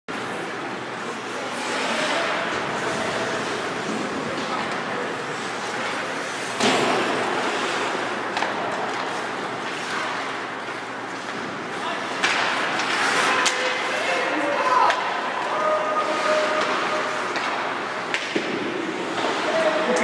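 Ice hockey game in an echoing indoor rink: spectators' voices and shouts over steady arena noise, with sharp knocks from play against the boards, the loudest about six and a half seconds in.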